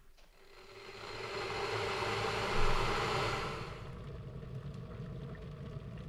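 Dualit electric kettle heating water: a rumbling hiss that builds over the first two seconds or so, then eases back to a lower, steady rumble.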